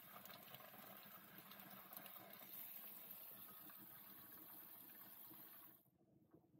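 Faint, steady stream of water from a pull-down kitchen faucet running into a stainless steel sink, cut off just before the end. The flow is even and unpulsing, fed by a Shurflo water pump smoothed by an accumulator tank.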